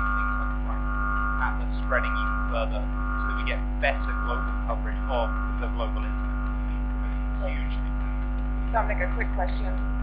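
Steady electrical mains hum made of several fixed tones, carried on the sound feed, with faint off-microphone speech under it.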